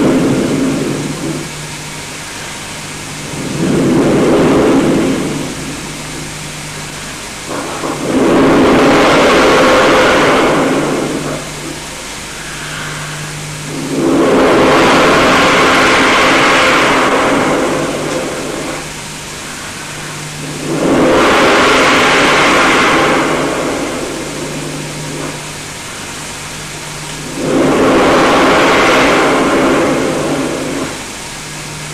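Long breaths blown straight into a handheld microphone through a hall PA, heard as loud rushing gusts of two to three seconds, about six of them a few seconds apart. A steady low hum from the sound system runs underneath.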